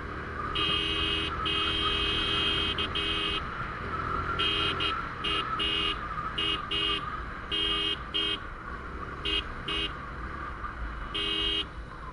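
Motorcycle electric horn honked over and over, a dozen or more short and longer blasts at irregular spacing, over steady wind and engine noise from the moving bike.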